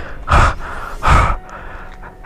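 A person breathing out hard twice, loud and close, like gasps: one breath about a third of a second in, the other just after one second.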